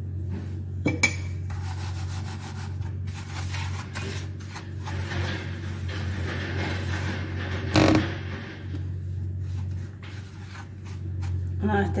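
A fork scraping and stirring dry breadcrumbs and cornmeal in a metal baking tray, then fingers rubbing through the crumbs, a dry rasping noise. A few light clicks about a second in and a single sharp knock about eight seconds in, over a steady low hum.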